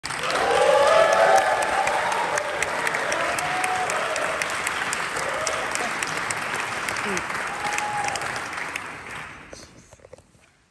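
Audience applauding, with a few voices over the clapping; the applause dies away about nine seconds in.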